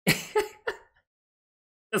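A man's voice making three short, breathy bursts about a third of a second apart, all within the first second. The last word of speech starts just at the end.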